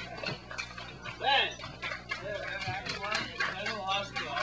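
Indistinct voices talking, with one louder vocal outburst a little over a second in, over scattered short clicks or taps.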